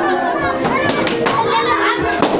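A crowd of children talking and shouting over one another.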